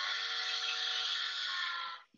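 Steam locomotive whistle sound effect from a SoundTraxx Tsunami sound decoder, played through a small speaker: one long blast of several steady tones over a hiss, cutting off near the end.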